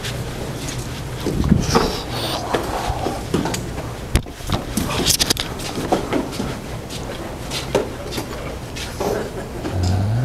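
A group practising in a large hall: scattered soft knocks and rustles of movement and clothing over a steady room hum, with faint murmured voices now and then.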